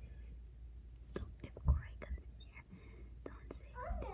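Children whispering, with short clicks and rustles and one soft thump a little under two seconds in.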